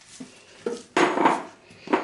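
Kitchen clatter: a small glass bowl being handled and set down, with one loud knock and scrape about a second in and another short knock near the end, among light clicks of hands spreading chopped rhubarb in a baking tin.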